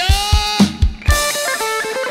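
Live band music: a rapid drum-kit fill of low kick and tom strikes under a held note, then the drums drop out about a second in, leaving sustained guitar chords ringing on.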